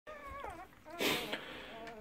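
Newborn working kelpie puppies whimpering: thin, high, wavering squeaks, with a short burst of noise about a second in.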